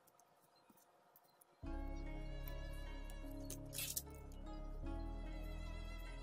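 Near silence for about a second and a half, then background music starts suddenly and plays on steadily.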